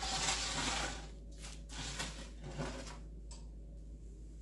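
A metal baking sheet loaded with biscotti slid across a wooden butcher-block counter: a scraping rush for about the first second, followed by a few short light scrapes and knocks as the pan is moved to the oven.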